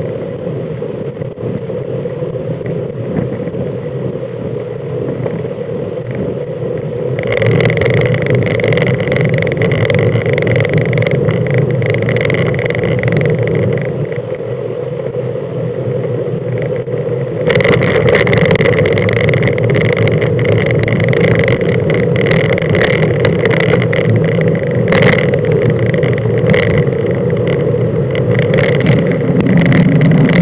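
Wind rushing over the microphone of a bicycle-mounted camera, with road rumble and the mount rattling over bumps as it rides along a country road. The noise is loud and steady and grows louder in two steps, about seven seconds in and again near the middle, with clusters of sharp clicks and knocks after each step.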